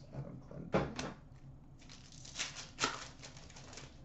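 Trading cards being handled: a run of rustling and small clicks as the cards slide and flick against each other, starting about two seconds in.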